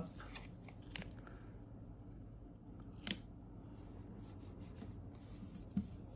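Faint paper rustling as a paper sticker and its backing sheet are handled and the sticker is pressed down onto a planner page, with three short sharp ticks: about a second in, around the middle, and near the end.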